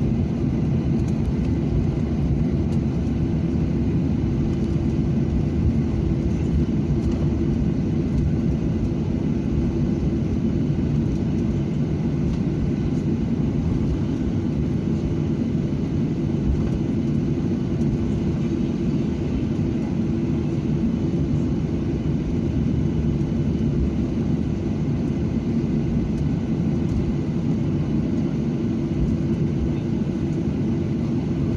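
Steady low rumble of a Boeing 737-800's jet engines at taxi power, heard inside the passenger cabin, with an even hum running through it.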